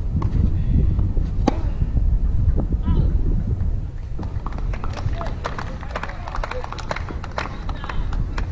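A tennis rally on a clay court: sharp racket-on-ball hits a second or more apart over a steady low rumble. In the second half come a denser run of lighter clicks and a few brief voices as the point ends.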